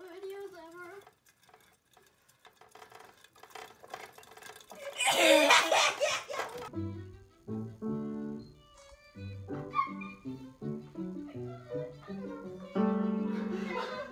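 Grand piano notes struck irregularly, one or a few at a time, by a cat pawing the keys, starting about halfway through, with a longer held note near the end. Before that there is a short loud burst of a person's voice about five seconds in.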